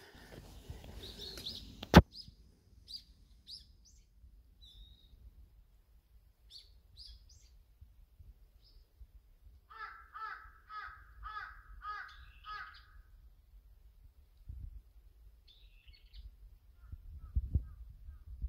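Birds calling outdoors: scattered high chirps throughout, and about ten seconds in a run of seven evenly spaced calls from a larger bird. A single sharp click about two seconds in is the loudest sound.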